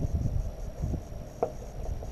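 Wind rumbling on the microphone, with light handling of a fabric heated pants liner as its side pocket is worked.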